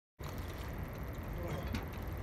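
Steady low outdoor background rumble that starts abruptly a moment in, after complete silence, with a faint voice in the background in the second half.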